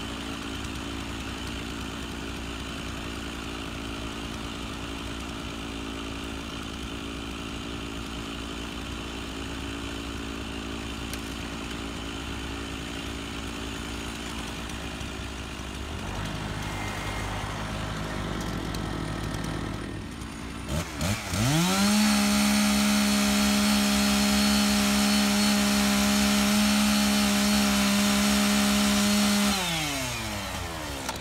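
A Kubota MX5400 tractor's diesel engine runs steadily, its note stepping up about halfway through. About two-thirds in, a two-stroke gas chainsaw starts with a couple of short bursts, then runs at a high, steady speed, much louder, for about seven seconds. It winds down just before the end.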